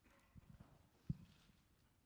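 Near silence, with a few faint low knocks, one sharper knock about a second in.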